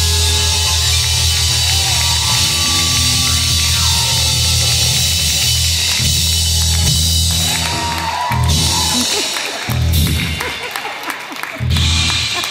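Live rock band with drum kit playing loud, driving music with heavy bass, then breaking off about eight seconds in into separate accented band hits a second or two apart.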